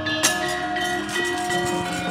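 Javanese gamelan ringing: bronze keyed instruments and gongs hold sustained, overlapping tones, with one sharp metallic strike just after the start.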